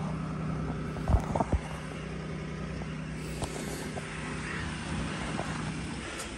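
A vehicle engine idling with a steady low hum, with a few short knocks about a second in.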